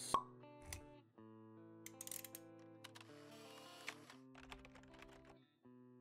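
Quiet logo-animation jingle: held musical notes with a short pop just after the start and a few light clicks scattered through, fading out shortly before the end.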